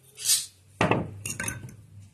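Dry pequi farofa poured onto a wooden serving board with a soft hiss. Then comes a sharp knock just under a second in, followed by a few lighter clinks of dishes and utensils being handled.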